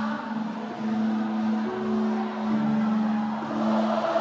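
Live worship band playing soft, sustained keyboard chords, long held notes that shift to new pitches every second or so, with no drumming.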